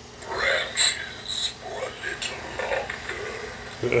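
Animatronic Halloween tree monster's recorded monster voice laughing, played through the prop's own speaker during an audio test.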